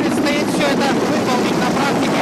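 Mi-8 helicopter flying low and close: the fast, steady beat of its main rotor over the whine of its turbines, loud throughout.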